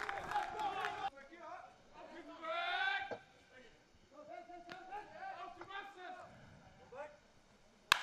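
Faint voices of people talking and calling out, louder for a moment about a third of the way in, with a single sharp click just before the end.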